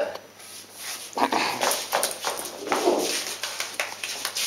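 Shoe steps and a wooden push broom knocking and brushing on a hard floor in irregular strokes, as someone dances with the broom.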